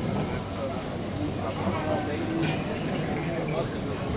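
Indistinct voices of people talking in the background over a steady low hum.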